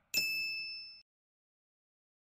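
A single bright, bell-like ding, the logo's sound effect, struck once and ringing with several high tones for under a second before cutting off abruptly.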